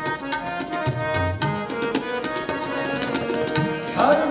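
Sikh kirtan instrumental passage: two harmoniums sustain a reedy melody over tabla strokes, with deep bayan thumps about a second in.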